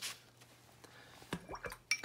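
Quiet room, then a few light taps and a short clink in the last half second as a paintbrush is worked against a plastic watercolour palette.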